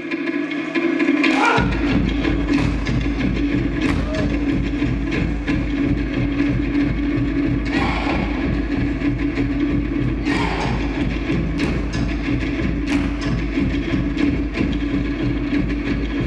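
Polynesian luau show music with fast drumming over a steady held tone, and sharp louder strikes every two to three seconds; the drum beat comes in about a second and a half in.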